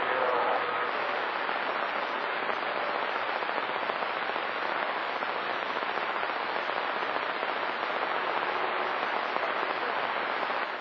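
A CB radio receiver on channel 28 giving out steady static hiss with its squelch open and no station coming through. A faint voice and a steady whistle tone fade out in the first second.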